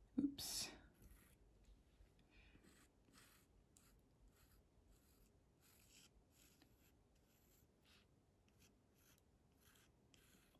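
Pencil drawing on watercolour paper: a series of faint, short scratchy strokes, each well under a second, as curved chain-link lines are sketched. A brief louder sound comes about half a second in.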